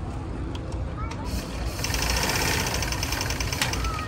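Black sewing machine stitching in a fast, even run that starts about a second in and stops just before the end, over a steady background rumble.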